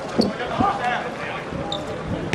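A football being kicked and bouncing on a hard court, with a sharp thud about a quarter second in, while players shout to each other.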